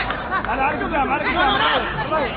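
Several voices talking over one another close to the microphone: spectators chattering at a football match.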